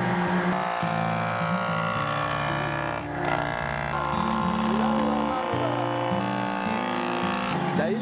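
Belt-driven electric wood jointer running as a rough plank is fed across its cutter to square the edge, a steady machine whine, with music playing over it.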